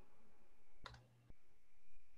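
A single sharp click at the computer, about a second in, over faint room tone.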